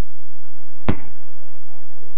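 A single sharp knock about a second in, against faint room tone.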